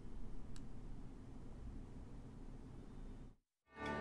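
Faint low background noise, a moment of dead silence, then background music starting near the end with several held notes.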